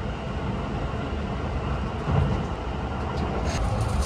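Running noise of a Keihan 8000 series electric train heard from inside the passenger car: a steady low rumble of wheels on rail, swelling briefly about halfway through.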